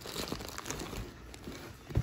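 Plastic packaging bag of worm bedding crinkling and rustling as it is picked up and handled, with a short sharp knock near the end.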